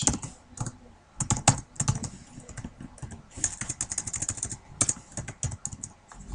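Typing on a computer keyboard: irregular runs of quick keystroke clicks with short pauses between them.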